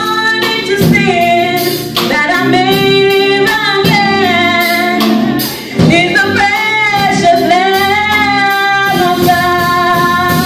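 A gospel choir of mostly women's voices singing in unison with long held notes, over a church band whose drums keep a steady beat.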